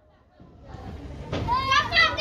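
A child's high-pitched voice crying out about a second and a half in, over a rising background of noise after a near-silent start.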